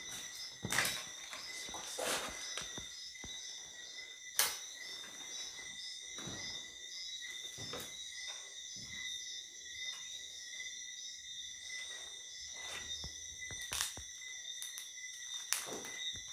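Steady night chorus of crickets chirping, with scattered footsteps and short knocks as someone walks over a floor strewn with papers and debris; the sharpest knock comes about four seconds in.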